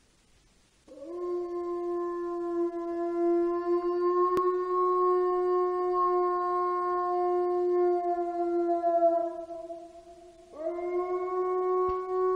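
A wolf howling: one long, steady howl that swoops up at its start about a second in, holds its pitch for some eight seconds and sags and fades at its end. A second howl rises in near the end.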